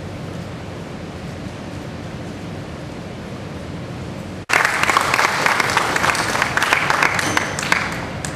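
Steady low room hum, then audience applause that starts abruptly about halfway through and fades near the end.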